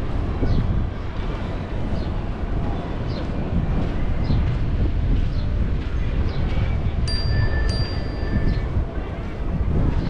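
Wind buffeting the camera microphone during a walk along a beach, with footsteps in the sand about once a second. A brief thin high tone sounds about seven seconds in.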